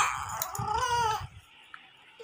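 A baby crying: a high, wavering wail that fades out after about a second.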